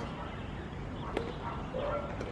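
A badminton racket strikes a shuttlecock once, a single sharp crack about a second in.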